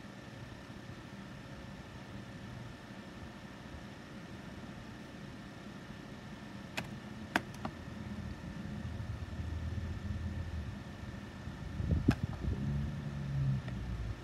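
Faint steady background hum, with two sharp clicks about seven seconds in and low rumbling with a single thump near twelve seconds.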